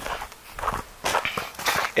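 Footsteps on snow, a few steps about half a second apart.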